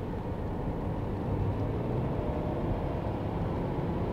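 Steady road and engine noise inside the cabin of a Subaru car driving at highway speed, an even low rumble.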